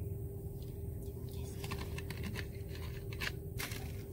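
Plastic syrup bottle and plastic cups being handled: a scatter of light clicks and crinkles from about a second and a half in, over a steady low hum.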